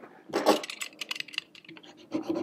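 A small knife handled against upholstery fabric as it is brought to cut a slit in the cloth: a quick run of light clicks and scratches for about a second, then quieter.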